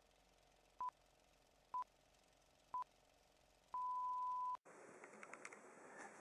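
Film-leader countdown beeps: three short beeps about a second apart, all at the same pitch, then a longer steady beep of almost a second. Faint room tone with a few small clicks follows.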